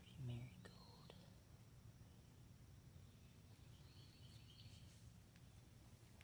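Near silence: a faint steady low background hum, with a brief soft sound just after the start.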